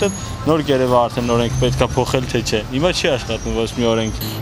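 A man talking continuously in Armenian, with a steady low hum of street traffic beneath.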